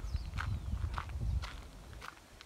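Footsteps on a gravel track, a few steps, under low rumble from the handheld microphone.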